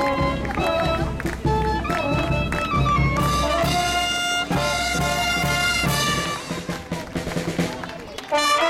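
Brass band with trumpets and drums playing a lively dance tune with a steady beat; the music thins out briefly near the end.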